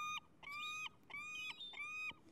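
Glaucous-winged gull calling: a steady series of short, clear, even-pitched notes, about two a second, four in all.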